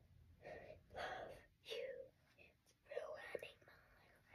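Quiet whispered speech from a girl: a few short, soft phrases with pauses between them.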